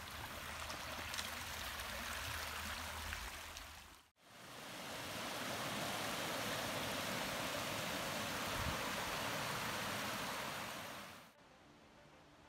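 Mountain stream rushing over rocks. A steadier flow comes first, then after a sudden cut a louder, fuller rush of water cascading over boulders, which cuts off near the end.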